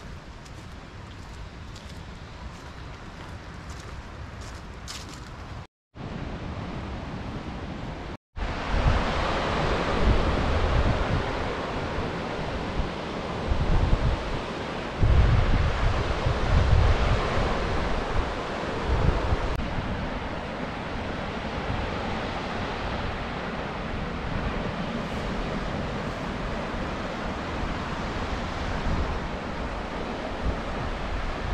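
Footsteps on a gravel trail, then, after the sound cuts out twice briefly, steady surf of Lake Michigan waves breaking on the shore below. Gusts of wind buffet the microphone.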